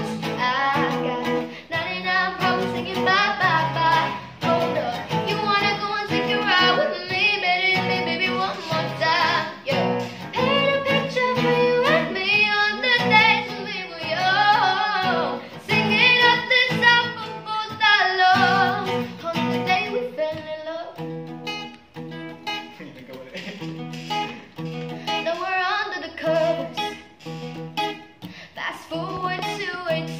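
Acoustic guitar accompanying a young woman singing a pop song.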